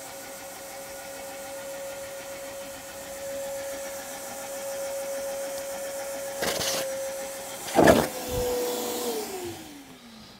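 Vacuum cleaner running with a steady whine, its hose sucking the air out of plastic film around a foam cushion block to keep the foam compressed. Two brief sharp noises come about two-thirds of the way in, the second the loudest. Near the end the vacuum is switched off and its whine falls away as the motor spins down.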